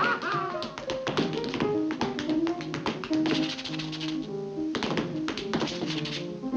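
Tap shoes striking a hard floor in fast, dense rhythm-tap steps over an upright piano accompaniment. The taps thin out briefly a little past four seconds in, then pick up again.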